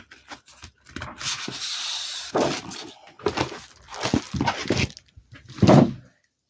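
Sheets of cardstock and their plastic wrapping rustling and rubbing as single sheets are pulled out and handled, with a few short sharp taps; the loudest rustle comes shortly before the end.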